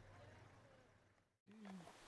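Near silence: faint outdoor background that drops to dead silence about a second in, followed near the end by a brief, faint low sound falling in pitch.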